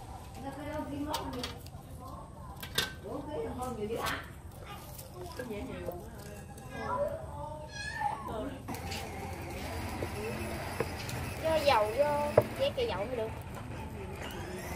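Voices of children and adults talking and calling in the background, with a few sharp knocks in the first few seconds.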